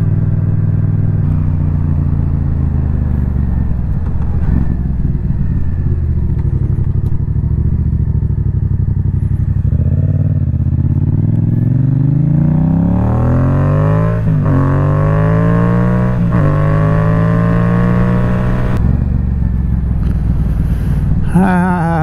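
A 2016 Yamaha FZ-07's parallel-twin engine heard from the rider's seat while riding. It runs steadily at first, then accelerates through two quick upshifts about two seconds apart, its pitch climbing between them. It holds speed briefly and then eases off, running well after its repair.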